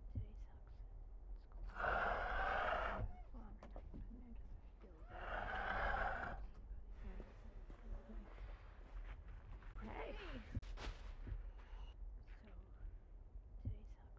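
Two long, breathy exhalations like sighs, the first about two seconds in and the second about five seconds in, over a faint low rumble, with faint murmuring later.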